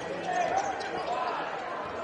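Live basketball game sound on a hardwood court: a ball being dribbled, with voices from the crowd and players going on throughout.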